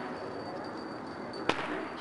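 A single sharp crack about one and a half seconds in, with a short ring-out, over the steady background hubbub of a large indoor hall.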